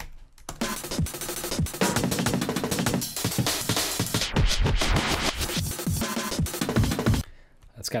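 Chopped electronic breakbeat live-coded in Tidal: sampled drum breaks cut into eighth-note slices, picked at random and played back in quick succession, with one break pitch-bent by acceleration and another panned rapidly left and right. It plays dense and driving for about seven seconds, then stops abruptly.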